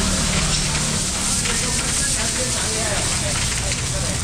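Steady rain: an even, crackling hiss that holds at one level throughout, with people's voices faintly behind it.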